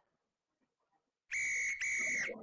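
Near silence, then two short blasts of a referee's whistle in quick succession, the second running on past the end.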